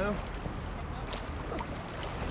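Water lapping and splashing around an inflatable raft in calm river water, with swimmers in the water beside it and a faint click about a second in.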